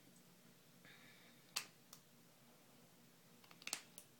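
Near-silent room with a few sharp metal clicks from a pair of scissors being handled at a gauze bandage: one loud click about one and a half seconds in and a quick run of clicks near the end.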